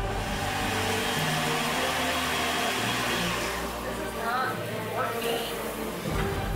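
Background music over a steady rushing kitchen noise that fades out about three and a half seconds in, with a few brief voices near the end.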